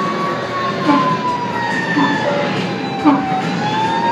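Electronic fire-engine siren sound effect from a coin-operated fire truck kiddie ride: one slow wail that falls in pitch over about three seconds and then starts to rise again.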